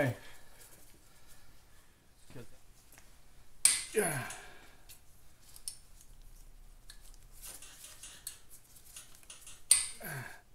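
Scattered light metallic clicks and clinks from hand work with tools and fittings on a motorcycle engine. There is a sharp click just before four seconds in and another near the end.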